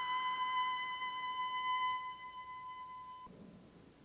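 Electric violin holding a long, steady high note. Its upper overtones fade about halfway through, and the note stops abruptly about three seconds in.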